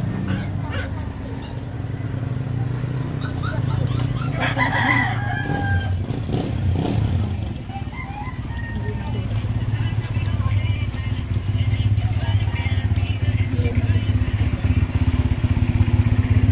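A rooster crowing once, about four seconds in, over a steady low rumble.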